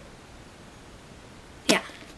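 Quiet room tone, then near the end a single short, loud whoosh sweeping down in pitch.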